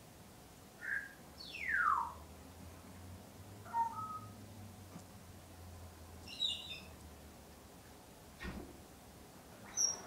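Scattered bird chirps and whistles, among them a falling whistle about two seconds in, over a faint low hum. Near the end there is one soft thump.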